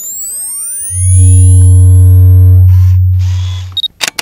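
Synthetic logo-sting sound effects: rising whooshing pitch sweeps, then a loud deep bass tone held for nearly three seconds. Near the end come a camera-shutter-like burst and a short high beep, then a few clicks.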